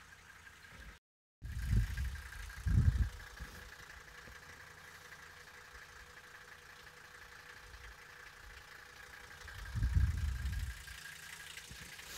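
A 1984 Mercedes-Benz 300D's five-cylinder turbodiesel idling steadily. Three short, low, louder thumps break in, about two and three seconds in and near the end, and the sound cuts out briefly about a second in.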